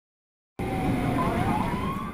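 Emergency-vehicle siren on a fire and rescue vehicle, wailing over a rush of noise; it cuts in suddenly about half a second in, its pitch dipping a little and then rising.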